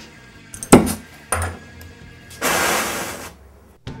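Two sharp metallic clanks, then about a second of steady hissing from a gas welding torch that stops abruptly.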